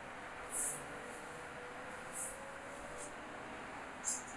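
City street traffic noise: a steady wash of passing cars, with a few short hissing sounds.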